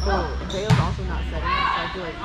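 A volleyball thudding once, about two-thirds of a second in, with players' voices around it on an indoor court.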